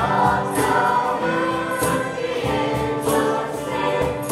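A mixed group of voices singing a Christmas carol together, with a light percussion beat underneath.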